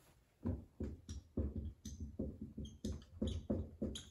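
Dry-erase marker writing on a whiteboard: a quick, irregular run of short scratchy strokes, a few of them with high squeaks, as a word is written out.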